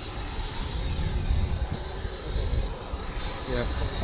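Steady rumble and high whine of a parked jet aircraft's turbine running on the apron, with a faint voice starting near the end.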